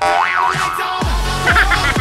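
A loud electronic comedy music sting cuts in suddenly, opening with wobbling, sliding synth tones. From about a second in come deep falling bass drops in a repeating beat. It is played as a gag cue on a joke.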